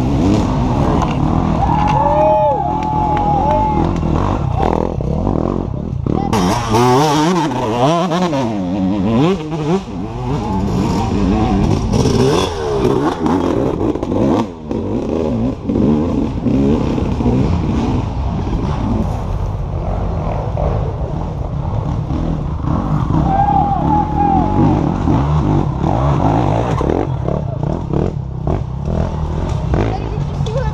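Off-road racing motorcycle engines revving under load on a dirt climb, the pitch rising and falling quickly, most busily about a quarter of the way in. Spectators' voices mix in underneath.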